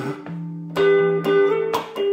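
Guitar chords played solo with no voice, struck about a second apart and ringing on between strokes.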